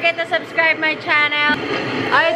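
A woman's voice, talking animatedly, with one long drawn-out syllable just past the middle.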